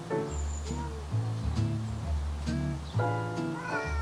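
A cat meowing several times over background music with a deep bass line.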